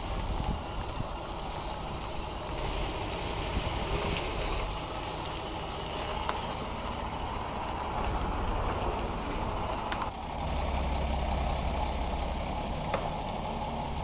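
City bus engine running, a low steady rumble under outdoor noise, growing stronger about ten and a half seconds in, with a couple of sharp clicks.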